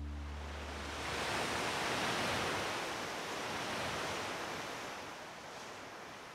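The last chord of the song dies away, then the sound of sea waves washing onto a beach swells up about a second in and slowly fades out.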